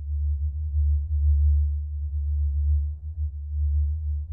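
Deep, low bass drone opening a metalcore song, a single low tone that swells and dips in loudness without any other instruments.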